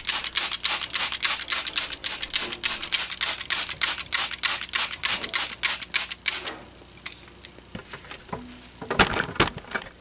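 Hand-pumped trigger spray bottle squirting water into the unit's tray in quick repeated strokes, about four a second, stopping about six and a half seconds in. A few handling clicks follow, with a louder knock and rustle near the end.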